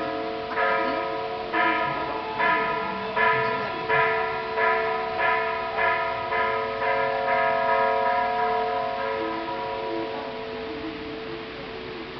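A bell struck over and over, a little more than once a second, each ringing tone running on into the next. The strikes grow weaker about nine seconds in and the ringing fades.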